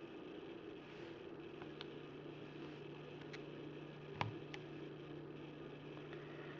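Quiet room tone with a steady low hum and a few soft, scattered clicks from a hand at the keys of a TI-84 Plus Silver Edition graphing calculator.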